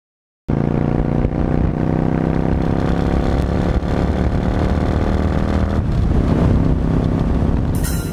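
Motorcycle engine running steadily at road speed, heard from the bike itself, cutting in abruptly about half a second in; a drum beat takes over near the end.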